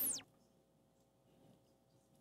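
A short swish with a tone falling fast from very high, over in about a quarter second at the very start, then near silence: a transition sound effect.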